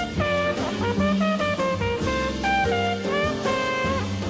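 Jazz flugelhorn solo: a fast line of many short notes, played over walking bass and a drum kit with cymbals.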